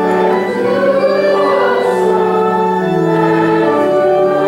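Organ accompanying sung voices in a slow church song, long held notes changing pitch about once a second.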